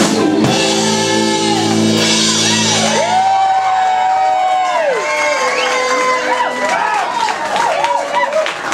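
Live rock band with electric guitar ending a song: a final held chord with bass rings out and fades about three seconds in, followed by sustained high notes that bend and slide in pitch.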